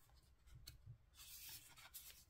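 Faint handling of tarot cards: a couple of light taps, then a scratchy rustle of cards sliding against one another from about a second in.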